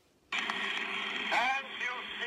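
A 1905 acoustic recording starts playing through a tablet's speaker: a narrow, tinny hiss of old-record surface noise comes in suddenly about a third of a second in. About a second later a spoken announcement of the title begins over it.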